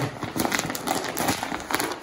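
Dried coyote pelt crackling and crinkling as it is pulled down over a wooden turning dowel to turn it fur-side out, the stiff dry skin giving a dense run of small, irregular crackles.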